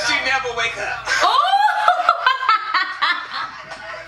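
A woman laughing hard, with talking and laughter from a group in a played video mixed in. The laughter builds from about a second in.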